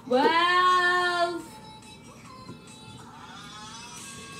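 A young female voice sings one long note near the start, gliding up and then held for about a second and a half, over faint background music.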